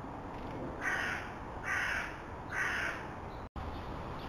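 Carrion crow cawing three times, about a second apart, each caw a harsh call of roughly half a second.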